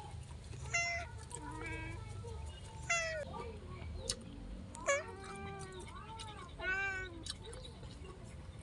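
A cat meowing repeatedly, a string of short meows that come closer together about five seconds in.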